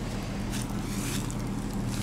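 A steady low hum, with a couple of faint handling rustles about half a second and a second in.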